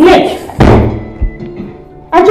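A brief vocal sound at the start, then a loud, deep thud about half a second in that dies away over the next second.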